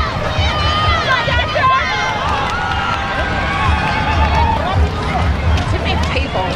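Spectators calling and shouting over one another along the sideline of a sand soccer game, with wind rumbling on the microphone.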